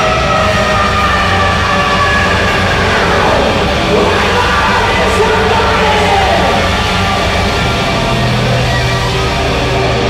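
Rock band playing live at full volume, with guitars and drums under a high line that slides up and down in pitch.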